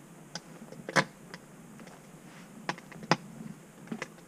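A handful of irregular sharp clicks and snaps from someone walking on the forest floor with a handheld camera: footsteps on twigs and handling noise. The loudest click comes about a second in.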